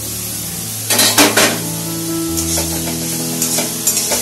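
Food frying in a steel wok on a gas stove, sizzling as it is stirred with a wooden spatula, with a cluster of sharp clacks of the spatula against the pan about a second in and lighter knocks later.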